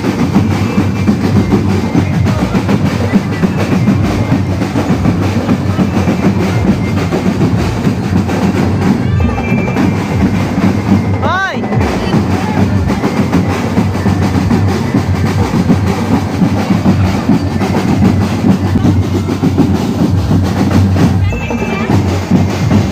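Marching drum corps playing a loud, continuous beat on snare and bass drums, with rolls. About halfway through, a brief rising-then-falling tone sounds over the drumming.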